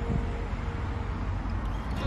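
Road traffic noise: a steady low rumble of cars passing on the road.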